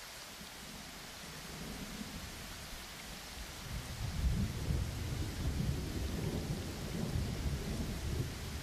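Rain ambience, a steady hiss, with low rolling thunder that builds in from about halfway and grows louder toward the end.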